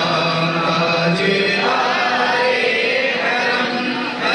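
Men's voices chanting together in a devotional recitation: a long held note that breaks off about a second and a half in, followed by a new phrase.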